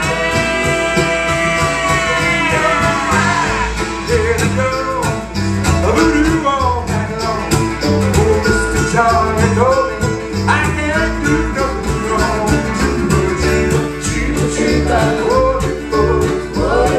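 Acoustic folk string band playing live: strummed acoustic guitar, mandolin and upright bass in a steady rhythm. A long sung note is held at the start.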